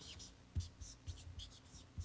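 Marker pen writing on paper: several short, faint scratching strokes as Chinese characters are written by hand.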